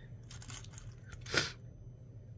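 Hands handling small craft pieces and mini wooden clothespins: faint rustling and clicking, with one brief crinkly crunch a little past halfway.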